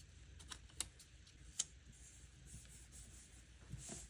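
Faint paper handling as a sticker is laid onto a planner page and pressed down by hand, with a few small ticks in the first half.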